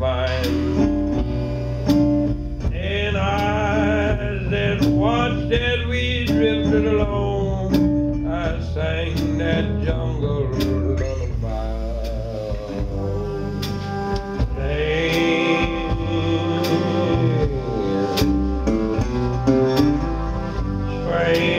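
Live blues band playing an instrumental break: trumpet and trombone play wavering held melody lines over guitar, upright bass and drums.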